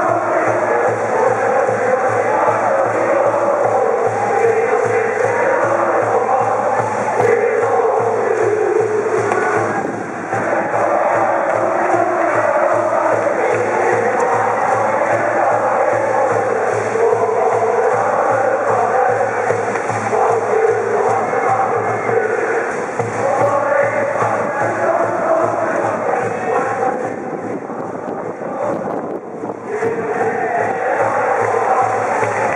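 High school brass band playing a baseball cheering song (ōenka) as part of a medley, the tune running on without a break, with the massed student cheering section singing and shouting along.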